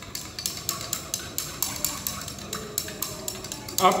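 Glass stirring rod clinking against the inside of a glass beaker in quick light clinks, about four a second, as ferrous ammonium sulphate crystals are stirred into distilled water to dissolve them.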